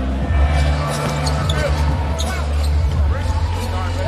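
Basketball arena sound: a ball dribbling on the hardwood court over a deep, steady bass from arena music on the PA, with crowd voices.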